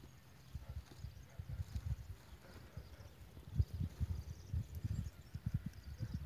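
A run of irregular, dull low thumps and knocks that begins about half a second in and grows denser and stronger in the second half, the loudest a little past the middle.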